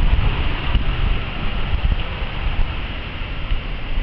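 Wind buffeting the camera's microphone: an uneven low rumble with a fainter hiss above it.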